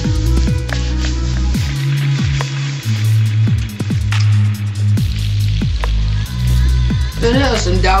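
Music with a deep, sustained bass line and booming bass drums hitting throughout; a voice comes in near the end.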